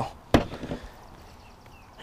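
A pepper shaker set down on a table with one sharp knock, followed by a few faint handling sounds.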